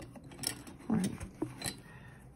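Black masking tape being handled and pressed onto a paper journal page: a few short crackles and ticks of tape and paper under the fingers.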